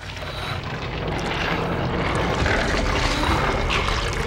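A deep rumbling sound effect that swells steadily louder, dense with low noise and no clear pitch.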